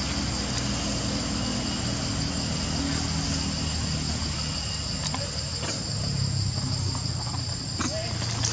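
Steady high-pitched insect drone running throughout, over a low hum and a few faint clicks.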